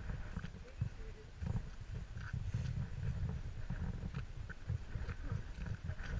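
Wind buffeting the camera's microphone, a low, irregular rumble, with faint footsteps on packed snow and slush.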